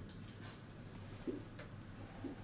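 Quiet room tone in a lecture room: a steady low hum with a few faint, sharp clicks.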